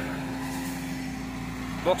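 Volvo crawler excavator's diesel engine running steadily, a constant low tone under an even mechanical noise.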